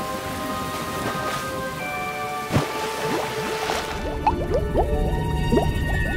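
Cartoon background music over a rainstorm sound effect, with a sharp thunder crack about two and a half seconds in. About four seconds in the rain drops away and gives way to a low underwater rumble and many short rising bubble sounds.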